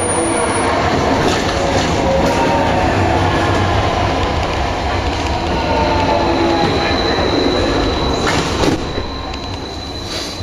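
Vienna U6 metro train running, heard from inside the car: a steady rumble of wheels on rail with a wavering squeal. A thin high whine joins about seven seconds in, and the noise eases slightly near the end.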